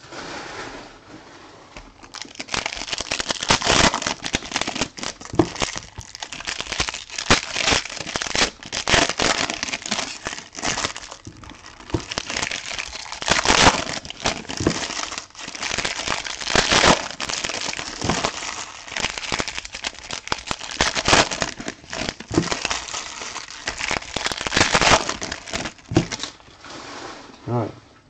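Foil trading-card pack wrappers being torn open and crinkled by hand: an irregular crackling that swells and fades, with louder crackles several times.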